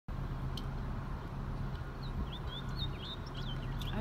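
Small birds chirping in short, quick high calls from about two seconds in, over a steady low hum.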